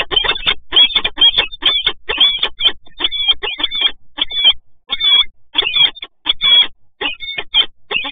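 Peregrine falcons calling in a nest box through the webcam microphone: a rapid run of short, harsh calls that bend up and down in pitch, two or three a second, with a few brief gaps.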